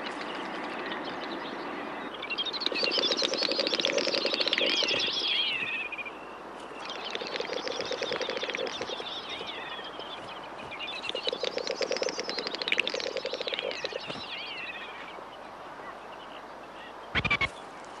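Common snipe drumming in its courtship display: three bouts of a fast pulsing hum, each swelling and then fading, made by the outer tail feathers in a diving flight, with higher notes rising and falling over each bout. A short sharp sound comes near the end.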